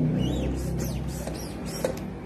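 A single sharp pop near the end: the homemade PVC alcohol-fuelled bolt-action gun firing. A steady low hum and some high chirps run underneath.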